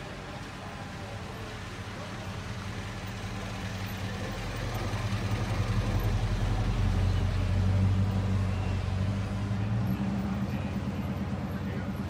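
A car engine idling steadily. It grows louder over several seconds, is loudest about eight seconds in, then fades a little.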